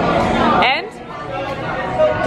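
Voices and background chatter of a busy restaurant, with a short rising vocal sound about half a second in, then a quieter stretch of murmur.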